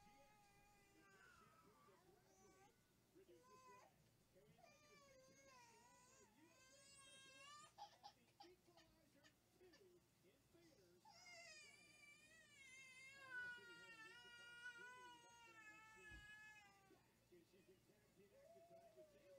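A baby crying in the distance: faint, wavering wails that rise and fall in pitch. Shorter cries come first, then one long cry lasting several seconds in the second half.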